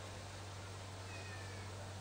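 A pause in the speech: a steady low hum from the open public-address microphone over faint background noise, with a brief faint falling call about a second in.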